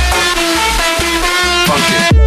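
Electronic dance music at a breakdown: the heavy kick drum drops out, leaving a run of plucked, guitar-like notes, and the beat comes back just at the end.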